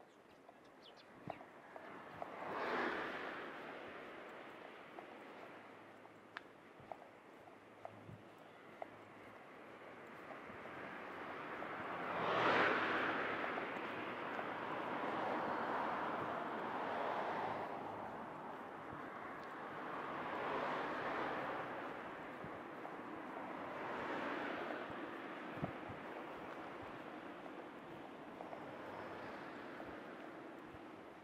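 Cars passing one after another on the adjacent road, each a swell of tyre and engine noise that rises and fades over a few seconds; the loudest passes come about 3 and 12 seconds in. Gusty wind buffets the microphone.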